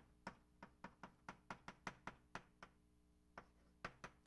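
Chalk tapping and clicking on a blackboard while formulas are written: a quick run of about a dozen sharp, faint taps, roughly four a second, that breaks off a little under three seconds in, then two more near the end.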